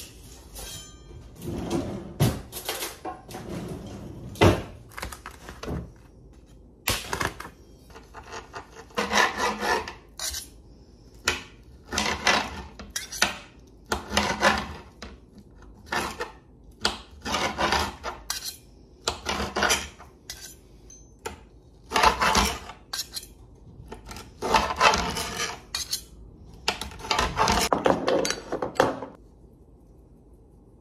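A large kitchen knife cutting raw chicken breast on a glass chopping board, the blade clicking and scraping on the glass in short bursts of strokes, roughly one burst every second or two.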